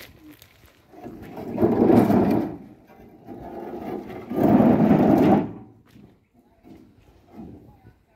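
Granite fencing posts scraping over the tractor trailer's stone load and edge as they are slid off by hand, two long grinding scrapes each lasting about a second and a half.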